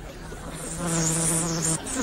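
A fly buzzing in a steady drone that cuts off suddenly near the end.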